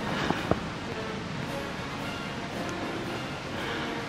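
Footsteps in snow: a few sharp crunches in the first half second, then a steady faint hiss.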